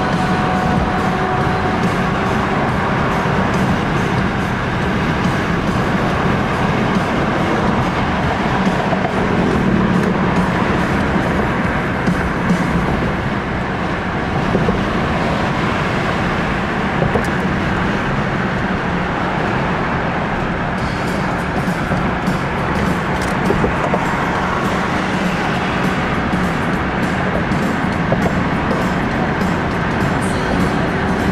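Music playing inside a car driving at highway speed, over steady road and tyre noise in the cabin.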